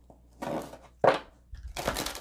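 A deck of tarot cards being shuffled by hand. A soft slide and a sharp tap come in the first second, then quick flicking of the cards being riffled in the last half second.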